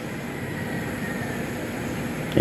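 Steady background noise of a crowded billiard hall, a low even hum and murmur with no ball strikes.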